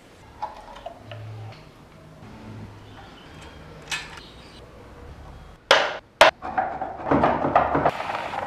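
Light clicks and taps of small tools handling wooden model parts, then two sudden loud noise bursts about six seconds in, followed by a loud, rough rushing noise near the end.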